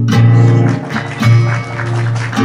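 Electric guitar strings plucked: a low note struck at the start and another about a second in, each left ringing.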